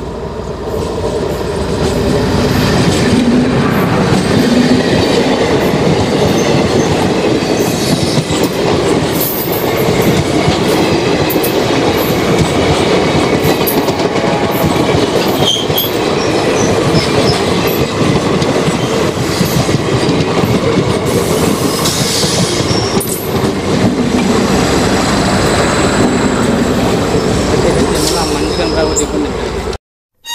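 ICF-built multiple-unit passenger train passing close by, its wheels clattering on the rails with many sharp clicks. The noise swells over the first two seconds as the train arrives and stays loud while the coaches go by.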